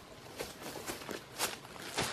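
Footsteps of a person walking through ferns and undergrowth, about three steps a second, growing louder as they come close.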